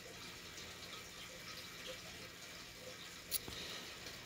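Quiet room tone: a steady faint hiss, broken by one short click a little over three seconds in.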